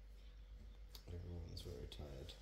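Quiet room with a few small clicks, and a man's low, soft voice starting about a second in.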